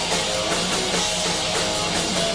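Heavy metal band playing live: distorted electric guitars over a driving drum kit beat, loud and dense.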